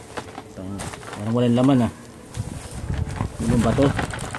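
A person's voice making a drawn-out wordless vocal sound about a second in and a shorter one near the end, with handling noise from the plastic-wrapped box in between.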